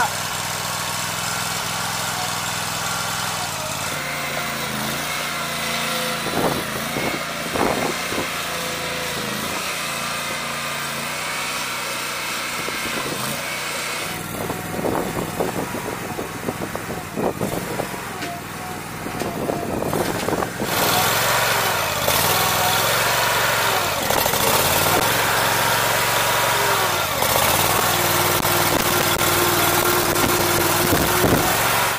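Small gasoline engine of a 115 Platypus mobile home mover running steadily, with a few knocks a few seconds in, and running louder from about two-thirds of the way through.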